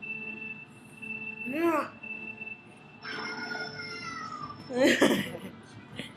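Meow-like vocal cries: a short rising-and-falling one, then a longer one that slides down in pitch, followed by a louder vocal burst near the end.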